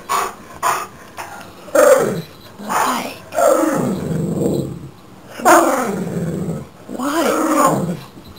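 Chesapeake Bay Retriever vocalizing in greeting: a run of about five drawn-out, grumbling calls, several sliding down in pitch, after a couple of short sounds at the start.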